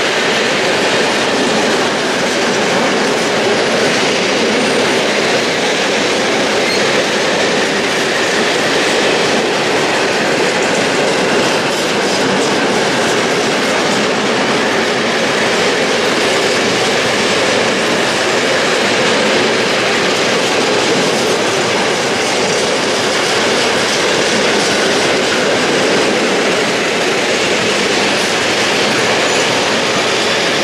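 Freight train of open coal wagons rolling past at close range: a steady, loud noise of steel wheels running on the rails throughout.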